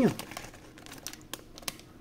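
Faint crinkling and a few small clicks of a plastic packaging bag being handled.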